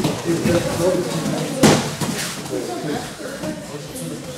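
Voices talking and chattering in a judo training hall full of children practising on the mats, with one sharp smack about one and a half seconds in.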